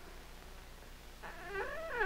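A domestic animal's long, drawn-out cry starting about a second in, rising and then falling in pitch, over the faint hiss and hum of an old 16mm optical soundtrack.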